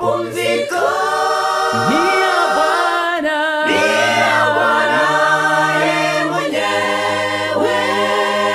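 A small mixed-voice group of men and women singing a Sabbath gospel song a cappella, in close harmony over a held low bass part, with no instruments.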